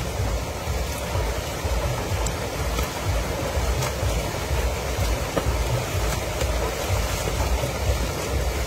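Steady rush of a shallow river flowing over a small rocky cascade, with a constant low rumble and occasional splashing as hands scoop and throw the water.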